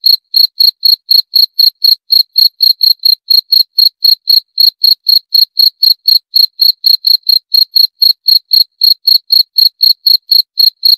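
Cricket chirping in a fast, even rhythm of about five high-pitched chirps a second.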